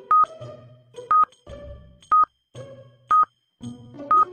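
Countdown timer sound effect: a short, high electronic beep about once a second, four times, over light background music.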